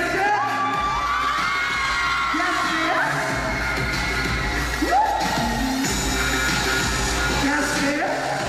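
Pop backing track played loud over a venue sound system with a steady bass, while the audience cheers and screams over it in high cries that rise and fall.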